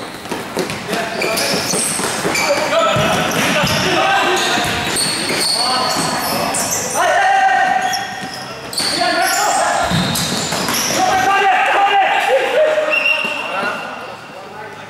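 Indoor futsal game in a large hall: shoes squeaking on the court, the ball being kicked and thudding on the floor, and players shouting to each other.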